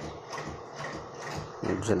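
Steady rhythmic mechanical clicking, about four to five clicks a second, under a faint background hum.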